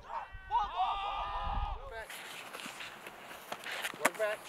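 A person's long drawn-out shout on a football practice field, over low wind rumble on the microphone. About two seconds in the sound cuts abruptly to quieter open outdoor air with a few light knocks.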